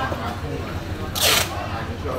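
Indistinct voices over market background noise, with one short, loud hissing rustle a little after a second in.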